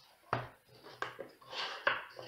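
A few short, light knocks and clicks of small objects being handled and set down on a table while a cardboard box is unpacked.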